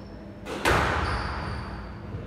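A squash ball struck hard by a racket and slamming into a court wall: a soft knock, then a sharp, loud bang just over half a second in, echoing on for about a second in the enclosed court.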